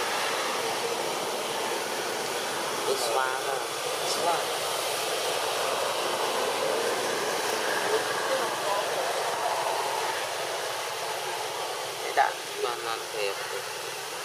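Steady outdoor background noise with indistinct voices of people talking at a distance; a few short, louder voice sounds stand out near the end.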